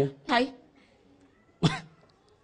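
A man's short vocal sounds: a brief syllable just after the start, then about a second and a half in a single sharp cough.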